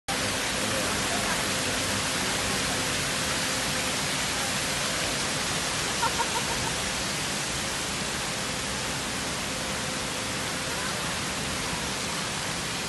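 Fountain water jets splashing into their basin: a steady rushing hiss. About halfway through, four quick high squeaks briefly stand out over it.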